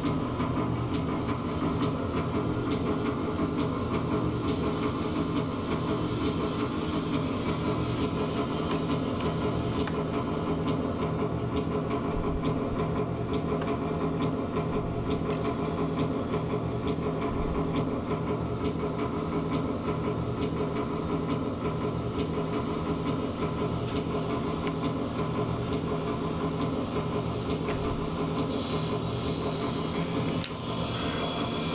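Steady, dense industrial noise drone from a rack of chained effects pedals: many held tones layered over a low hum, changing little throughout.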